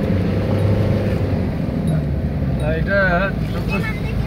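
Steady low drone of a car's engine and road noise, heard from inside the cabin while driving. A faint pitched hum fades out during the first second and a half.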